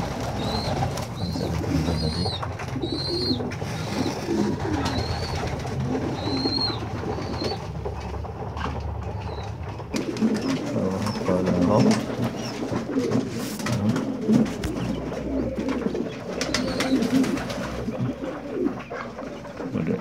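Domestic pigeons cooing, with newly hatched quail chicks peeping in short, high, arched calls about once a second through roughly the first half.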